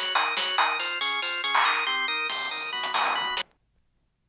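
A BeepBox synthesizer tune plays: a melody of beeping electronic tones over a stepping bass line, with regular noise-drum hits. It cuts off suddenly about three and a half seconds in as playback is paused.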